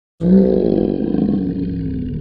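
A dinosaur roar sound effect: one long, low roar with wavering pitch that starts suddenly just after the beginning and slowly fades.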